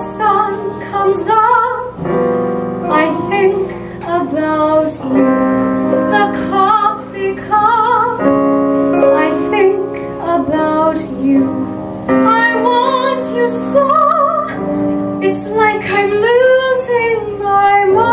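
A soprano voice singing a show tune with piano accompaniment, holding notes with a clear vibrato.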